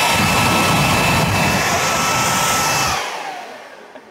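Handheld leaf blower running at full power, a loud rush of air with a steady high whine, then switched off about three seconds in, its whine falling away as the motor spins down.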